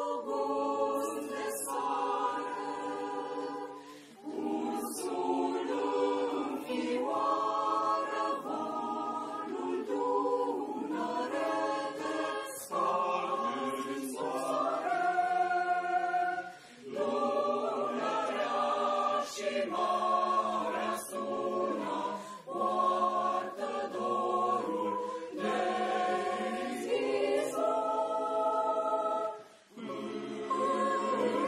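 Mixed choir of men's and women's voices singing in harmony, in phrases with short breaks about four seconds in, about seventeen seconds in, and just before the end.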